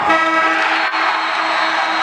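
A long, steady horn note with a buzzy edge, over arena crowd noise.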